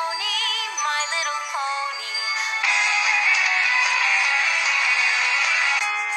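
Cartoon musical number: a sung melody with wide vibrato over instrumental backing, then from about two and a half seconds in a loud, held full chord that breaks off near the end as different music cuts in.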